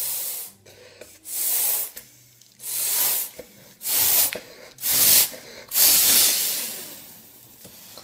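A series of loud hissing bursts of air, roughly one a second. The last burst is longer and fades away.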